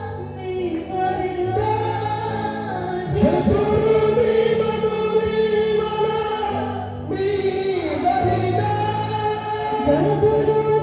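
Gospel worship song: a man's voice singing long held notes through a microphone over sustained keyboard chords, with the singing swelling louder about three seconds in and a brief lull about seven seconds in.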